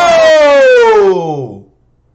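A man's long, drawn-out "whoa!" of amazement, held and then falling in pitch as it trails off about a second and a half in. Background noise under it cuts off just after the start.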